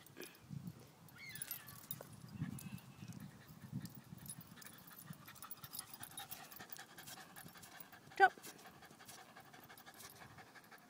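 A Border Terrier panting faintly during play.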